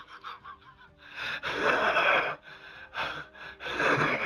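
A man laughing hard in wheezing, gasping breaths. Quick short puffs come first, then a long breathless wheeze from about one second in, and two more gasps near the end.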